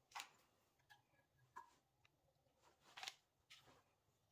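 Near silence with a few faint clicks and taps of PVC conduit pieces and fittings being picked up and set down on paper. The two strongest taps come just after the start and about three seconds in.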